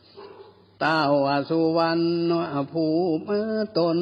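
A monk reciting a Northern Thai (Lanna) sermon in a sung, chanting style, with long held notes that step in pitch between phrases. The voice starts again after a pause of nearly a second.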